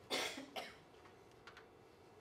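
A person coughing twice in quick succession, a longer cough followed by a short one about half a second later.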